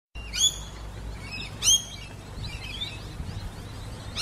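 A bird calling: two short, loud calls about a second and a quarter apart, with softer chirping between them, over a low steady rumble.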